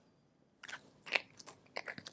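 A few faint, short sniffs, irregularly spaced, as a person smells lotion she has just rubbed onto her hand.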